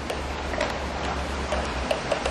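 Plastic baby walker rolling across a tiled floor: a low steady rumble from its wheels with a handful of light, irregular clicks and taps from the plastic frame and toy tray.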